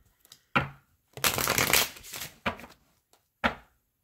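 A deck of cards being shuffled by hand in several short bursts, the longest lasting about a second.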